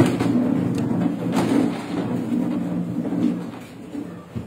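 Handling noise: papers and posters being moved on a table near a microphone, with a few sharp knocks over a steady low hum.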